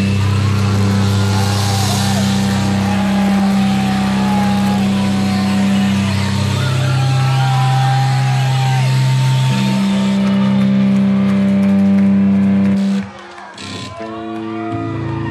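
Live rock band holding long distorted low chords with a wavering high lead line above them as the song closes. The held notes shift pitch a few times, then cut off together about a second before the end.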